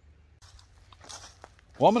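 Faint crunching and rustling of dry leaf litter underfoot, a few soft clicks against a quiet background, before a man starts speaking near the end.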